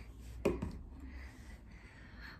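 A single sharp knock about half a second in, then faint room hum.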